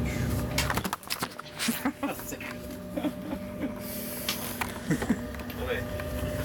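Camera handling noise: a quick run of clicks and knocks about a second in as the camera is knocked out of position, then rubbing and scraping on the microphone while the train's low rumble fades back in near the end.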